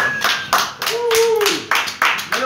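A small audience clapping by hand in quick, irregular claps, with a voice calling out over the applause about halfway through.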